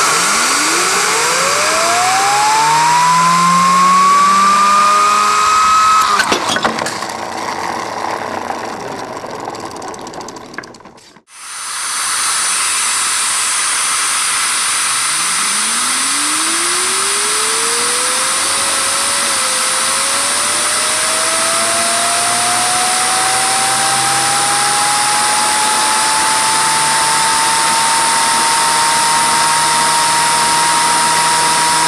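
Homemade plastic Tesla turbine driven by compressed air from a blow gun: the air hisses and the rotor's whine rises steadily in pitch as it spins up. About six seconds in the whine breaks off and the sound dies away. About eleven seconds in the hiss comes back, and the whine climbs again more slowly, levelling off near the end.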